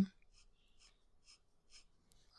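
Extra-fine fountain pen nib faintly scratching across paper in a series of short, quick strokes.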